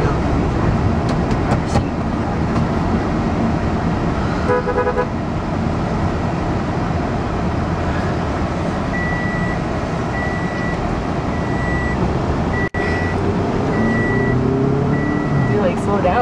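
Steady road and engine noise inside a moving car's cabin. About four and a half seconds in there is a brief pitched toot, and from about nine seconds a high electronic beep repeats a little faster than once a second.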